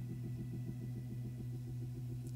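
Soft church organ holding a sustained low chord, its upper notes wavering gently and evenly.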